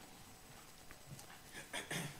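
Faint room tone in a pause in a man's speech, with a brief soft voice sound near the end.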